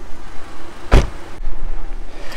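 A car door slammed shut once, about a second in, over a low steady rumble.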